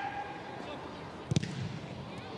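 A football kicked once about a second and a half in, a single sharp thud, over faint steady pitch-side background noise.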